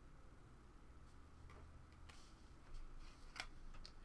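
Near silence, with a few faint clicks and light scrapes from the second second on as a stack of trading cards is handled and shuffled in the hands.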